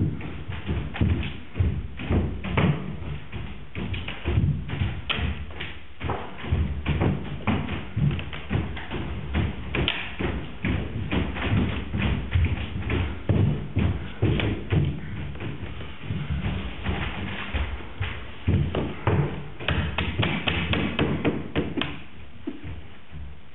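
A dense, irregular run of thumps and knocks, several a second, like stage action with feet and objects striking a wooden floor.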